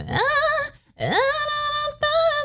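A female singer's voice in a soft pop ballad: two sung phrases, each sliding up from low into a held note, with a brief break just before the middle.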